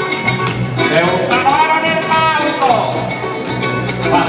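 Live joropo llanero: a male singer holds one long sung note that slides down at its end, over a harp-led band keeping a quick, even rhythm.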